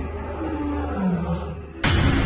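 A male lion roaring in the distance, over a low steady drone: the roar of a rival male approaching the pride. A sudden loud hit comes in just before the end.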